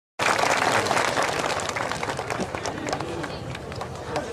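Audience applauding, loudest at the start and dying away over the next few seconds, with some voices underneath.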